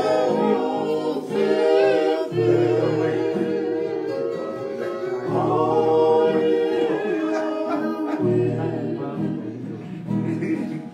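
A group of men singing a Tongan song together in harmony, holding long notes, with strummed acoustic guitars behind them.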